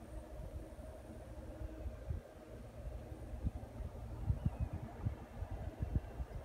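Wind buffeting the microphone in uneven low gusts, over a faint steady hum.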